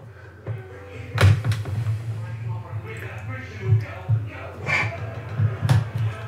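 Handling noise from a camera being moved on a clamp-on camera mount: a run of low bumps and rustles, with a sharp knock about a second in and another near the end.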